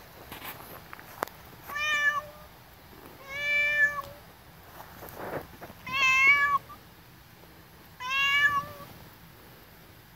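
A domestic cat meowing four times, each call lasting about half a second to a second.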